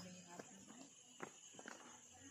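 Very quiet outdoor sound: faint voices talking near the start, three short soft knocks or steps, and a steady high hum underneath.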